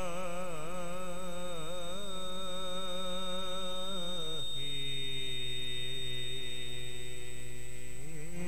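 A man singing Sikh kirtan, holding a long wordless phrase with wavering ornaments, then gliding down about four and a half seconds in to a lower, steadier held note. A thin steady high-pitched tone runs underneath.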